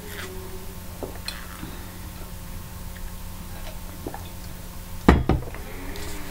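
A person drinking water from a tumbler, with a few soft small clicks and swallows, then a loud thump about five seconds in as the tumbler is set down on the desk. A steady low hum runs underneath.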